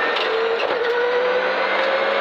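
Rally car's engine heard from inside the cockpit, pulling hard under acceleration with its revs climbing slowly and steadily.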